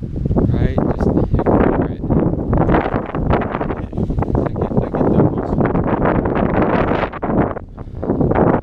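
Wind buffeting the microphone of a handheld camera: a loud, rough, steady noise that eases briefly near the end.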